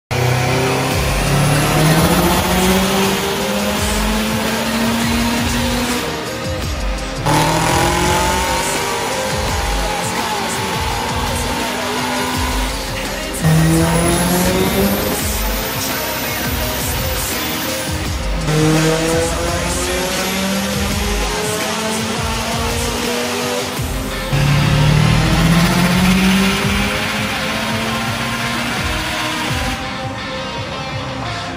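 Turbocharged Subaru engines making full-throttle pulls on a chassis dyno, in about five cut-together clips. In each clip the engine note climbs steadily in pitch for several seconds before the next begins.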